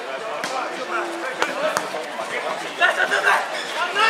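Volleyball players' voices calling and chatting on the court, louder shouts near the end, with three sharp slaps of hands hitting the volleyball.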